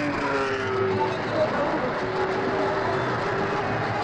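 Sport prototype race car engines running at speed on a circuit: a steady engine note that slides slowly in pitch.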